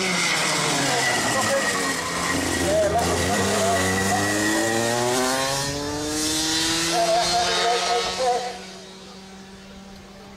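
A 125 cc two-stroke racing kart engine at full throttle, passing close by. Its note dips, then climbs steadily as it accelerates up the hill, and fades near the end as it pulls away.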